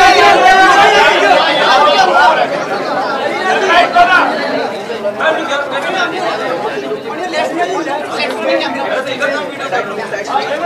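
Many overlapping voices of press photographers chattering and calling out, louder in the first two or three seconds.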